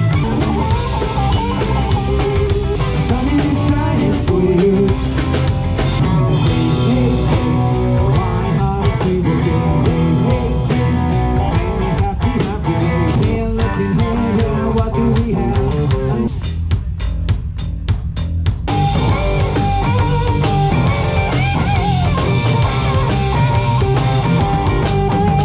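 A live rock band playing amplified: a singer over electric guitars, electric bass and a drum kit. About two-thirds of the way in the band drops to mostly drums for a couple of seconds, then comes back in full.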